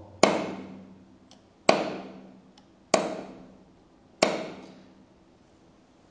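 A knife cutting the excess lead off a pressed airgun pellet in a steel press die: four sharp clicks about a second and a half apart, each ringing out briefly, as the blade goes through the soft lead and strikes the die.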